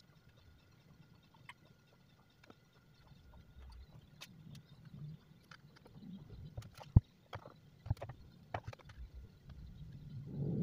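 Quiet scattered clicks and light knocks of a spoon against an aluminium baking tin as liquid caramel pudding is spooned gradually onto the set yellow layer, with a sharper knock about seven seconds in and a few more near the end.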